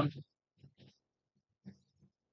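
The clipped end of a man's spoken word, then near silence broken by a few faint, very short sounds.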